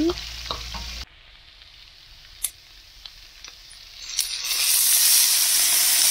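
Shrimp and asparagus frying in oil in a nonstick pan, stirred with a plastic spatula, with a few light clicks of the utensil. From about four seconds in, the sizzling grows much louder and holds steady.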